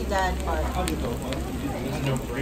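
Eel pieces sizzling on a foil-lined tabletop grill, with scattered small crackles, under people talking.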